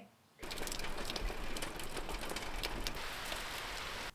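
Steady rain, a dense patter of drops, starting abruptly after a brief silence about half a second in.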